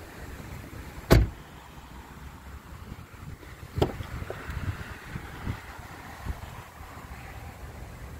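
2015 Dodge Charger's doors: a door shuts with a loud, solid hit about a second in. Near four seconds a sharper latch click follows, then a few lighter knocks as the rear door is opened.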